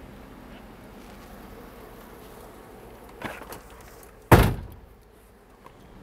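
A vehicle door shutting with a single loud thud about four seconds in, over a low steady outdoor hum.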